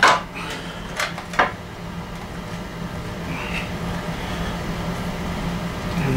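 A few sharp metal clicks and clunks, three of them within the first second and a half, from the shift rod and gears of a 1994 Johnson 35/40 hp outboard lower unit being shifted and its prop shaft turned by hand. A steady low hum runs underneath.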